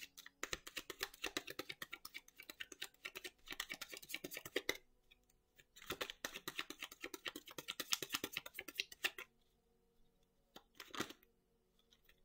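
A deck of tarot cards being shuffled by hand, a rapid run of card flicks and clicks. It comes in two stretches of about four seconds each with a short pause between, then a brief flick near the end.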